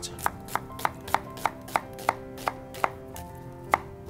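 Chef's knife slicing through an onion half and striking a plastic cutting board: quick, even cuts about three a second, a short pause, then one more cut near the end.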